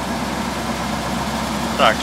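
Slavutych KZS-9-1 combine harvester's diesel engine running steadily at idle while the machine stands.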